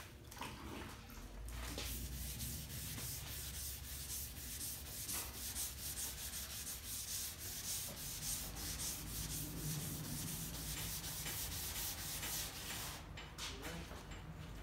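Hand block-sanding of the 2K-primed steel tailgate of a Chevy pickup: sandpaper on a sanding block rasping over the guide-coated primer in quick back-and-forth strokes. It starts about a second and a half in and stops shortly before the end. The blocking levels the primer over the old-to-new paint transition.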